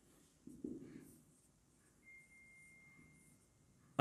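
Near silence: faint marker strokes on a whiteboard, with a faint rustle under a second in and a thin, faint, steady high tone lasting about a second near the middle.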